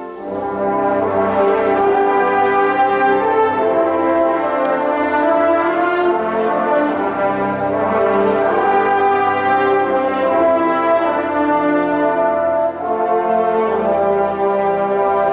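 Marching band brass playing sustained full chords, with a low bass line from sousaphones underneath. The sound dips briefly just after the start and again near the end, between phrases.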